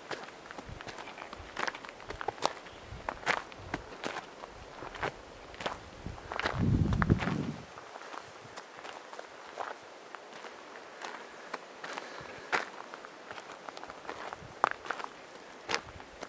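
Footsteps on a gravel trail, a steady walking sequence of crunching steps. About six and a half seconds in there is a brief low rumble lasting over a second, the loudest sound in the stretch.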